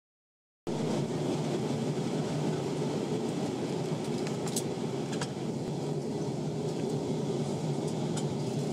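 Steady cabin noise inside an Airbus A320-232 airliner on descent, a low even rumble of engines and airflow heard from a window seat over the wing. It begins abruptly just under a second in, with a couple of faint clicks midway.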